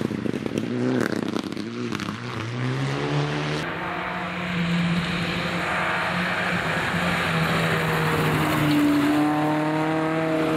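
Rally cars on a gravel stage: first a car approaching with loose gravel crackling and its engine pitch rising as it accelerates. After a cut, a first-generation Renault Clio rally car holds a steady engine note through a corner, its pitch climbing gently near the end as it pulls away.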